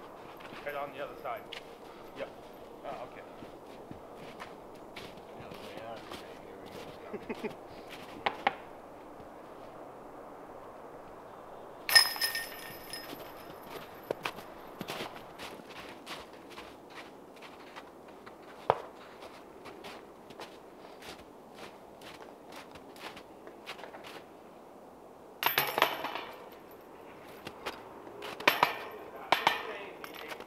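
Footsteps in snow and scattered light knocks as disc golf discs are putted and picked up, with one sharp metallic clash about twelve seconds in and a rattling cluster near the end, typical of a disc striking the chains and steel basket.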